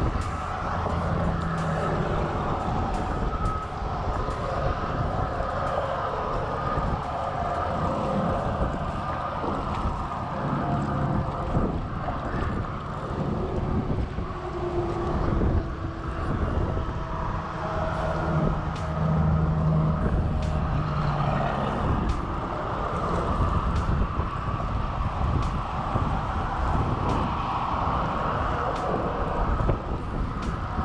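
Road traffic on a nearby highway bridge: cars and trucks passing in a steady, continuous stream of tyre and engine noise with a low rumble.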